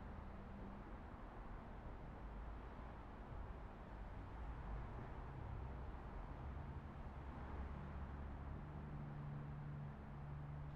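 Faint outdoor background noise: a low rumble, with a soft steady hum that comes up about eight seconds in.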